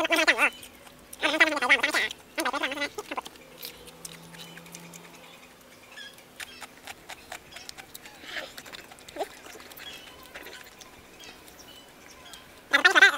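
A man's voice briefly in the first three seconds, then soft, irregular crunching clicks of raw carrot being chewed.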